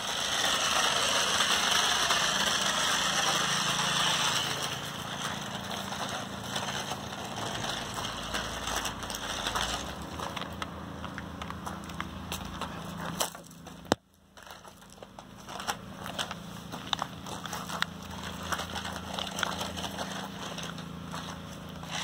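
Small toy RC truck running, its electric motor and gears giving a steady whir with a high hiss that is loudest for the first few seconds. After that come many small crackles and crunches of grass and dry leaves as it moves over the ground. The sound cuts out briefly about two-thirds of the way through.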